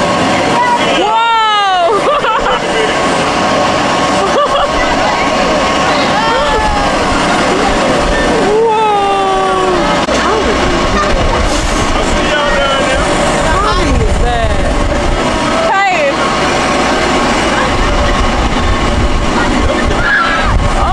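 Wind rumbling over the microphone as a spinning carnival ride swings it around, with a steady hum underneath and voices calling out in long rising-and-falling cries several times.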